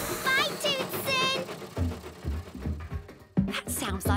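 Dhol, a Punjabi barrel drum, played in a beat of low booming strokes starting about two seconds in, over children's show music. It follows two brief wavering voice-like calls at the start.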